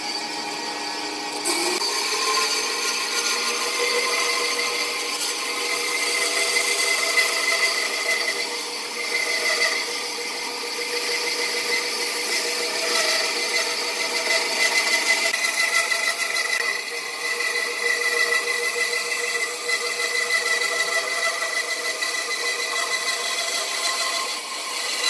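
Band saw cutting through a wooden burl log. The machine gives a steady running sound with a high ringing tone over it.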